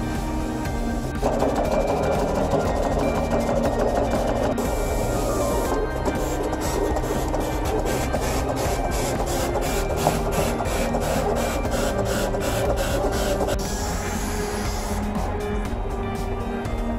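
A garment pattern plotter is running, its pen carriage moving back and forth along the rail. Its motor whir starts about a second in and stops near the end, over background music.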